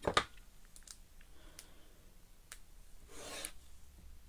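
Paper crafting handling on a desk mat: a knock right at the start, a few faint clicks, then a short papery rub about three seconds in as a small card tag is picked up and moved.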